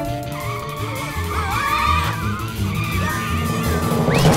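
Cartoon sound effect of a motorcycle skidding, its tyres squealing in a long wavering screech, over background music.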